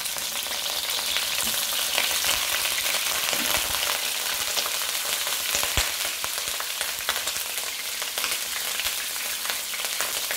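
Small whole sea fish frying in hot oil in a wok: a steady sizzle with constant fine crackling of spattering oil, and one sharper pop a little before the end.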